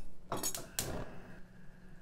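Two sharp clinks of metal kitchenware in the first second, followed by a faint steady hum.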